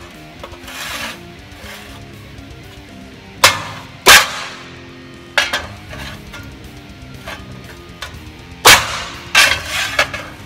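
Ball-peen hammer striking a brickie's bolster held on the fold line of a steel sheet, bending it over angle iron in a vise: about five sharp blows at uneven spacing, with lighter taps between.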